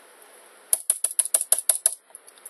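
Computer keyboard's Enter key pressed rapidly about ten times in a row, quick clicks at roughly eight a second, starting under a second in.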